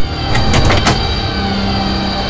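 Vehicle engines running with a low rumble, and several sharp clicks in the first second. A steady low hum joins about halfway through.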